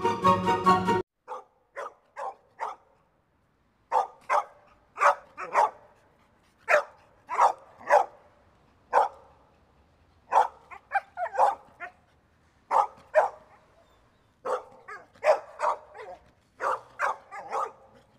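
Music stops about a second in. A dog then barks over and over in short, unevenly spaced barks.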